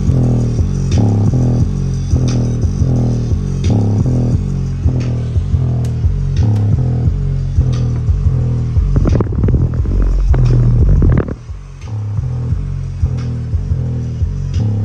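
Bass-heavy music played loud through a Westra 4.5-inch woofer in a box, a pulsing bass line of about two notes a second with little treble. The deepest, loudest bass comes about nine to eleven seconds in.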